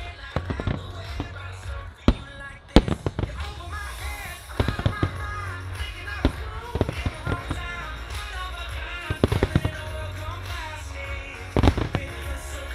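Fireworks shells bursting over music: sharp bangs, the loudest two about two and three seconds in and a quick run of them near the end, with scattered smaller cracks between.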